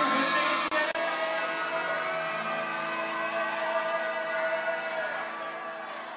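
Live band music held on a long, sustained chord with a held vocal line, fading slowly near the end as the song closes.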